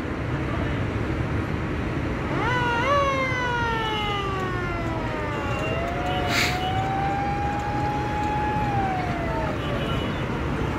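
A siren sounds about two seconds in, jumping up in pitch and then sliding slowly down over about three seconds. A second, lower wail follows, rising a little and falling away near the end. A steady rumble of engines and crowd runs underneath, with a brief hiss in the middle.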